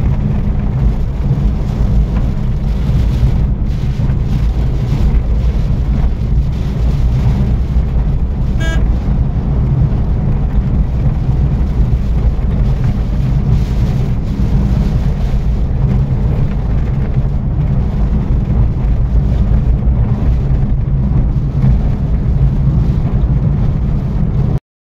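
A car driving on a wet road, heard from inside the cabin: a loud, steady low rumble of engine and tyre noise.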